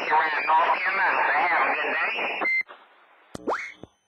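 Another operator's voice coming in over a CB radio speaker, thin and narrow-band, which ends about two and a half seconds in with a short beep. After a moment of faint hiss, a brief rising tone sounds near the end.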